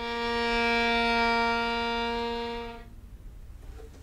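Violin holding one long low note, the B-flat that ends a B-flat harmonic minor scale, for nearly three seconds before the bow stops.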